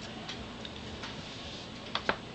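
A few faint ticks, then a sharper click near the end as a clear plastic ruler is set down on paper over a tabletop.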